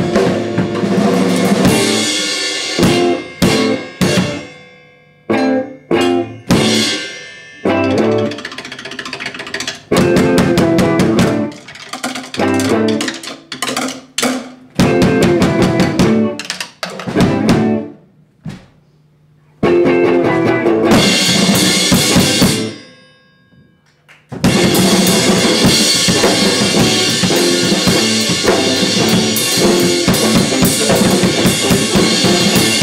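Live drum kit and electric guitar playing a stop-start passage: sharp hits together, separated by short breaks and a few near-silent pauses. In the last few seconds the band plays on continuously.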